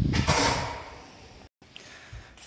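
A single creak lasting under a second, loud at first and then fading away.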